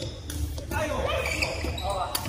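Badminton rackets hitting a shuttlecock during a rally, a few short sharp strokes, with players' voices.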